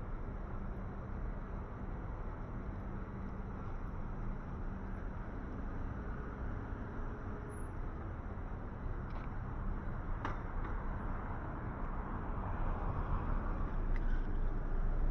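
Street traffic: cars driving past, a steady low hum of engines and tyres, getting louder near the end as a car passes close by.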